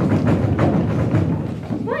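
Stage thunder sound effect standing for Zeus's thunderbolt: a loud rumbling crash that starts suddenly and lasts nearly two seconds.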